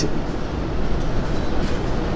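Steady background noise, a low rumble with hiss, running evenly with no distinct events.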